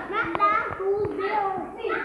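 Several young children talking and calling out at once, their voices overlapping.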